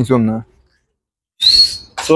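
A short, sharp human whistle near the end, rising slightly and then held, the kind used to call or drive a flock of sheep. It follows the last word of a man's speech.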